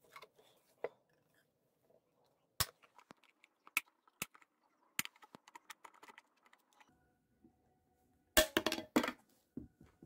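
Sharp plastic clicks as a knife blade pries at the snap-fit bottom cover of a Eufy Homebase 2, spaced a second or so apart, then a quick cluster of louder cracks about eight and a half seconds in as the cover comes free.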